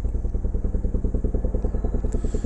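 Police helicopter flying slowly overhead: its rotor blades make a loud, rapid, even beat.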